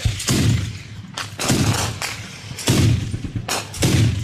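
Small-arms gunfire in a firefight: irregular single shots and short bursts, some in quick clusters.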